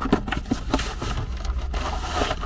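Cardboard packaging being handled: a long cardboard box is lifted out of a carton and laid back down, scraping and rubbing against the cardboard with several light knocks.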